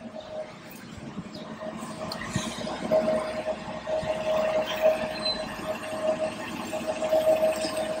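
A steady mechanical background hum with one constant mid-pitched whine, growing louder over the first few seconds.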